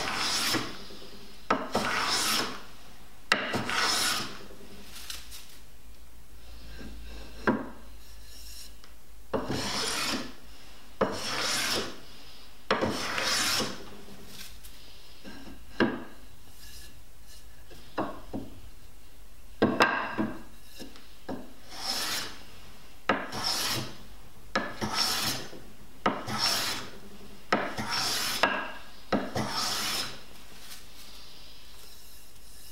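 Block plane cutting shavings from an oak chair leg: a series of short swishing strokes, each starting with a sharp catch, about one every one to two seconds with a few brief pauses.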